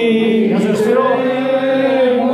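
Men singing together unaccompanied at the table, drawing out long, slowly wavering notes in a chant-like melody.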